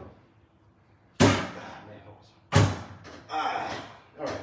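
Crowbar being worked into the bottom seam of a steel ATM cabinet: two sharp metallic clanks about a second and a half apart, each dying away over about a second.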